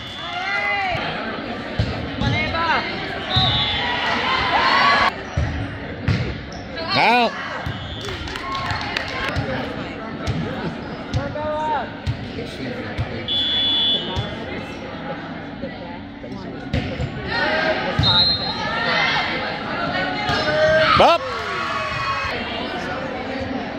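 Volleyball rally in a school gymnasium: the ball knocking off players' arms and hands, sneakers squeaking on the hardwood floor, and players and spectators calling out, all echoing in the hall.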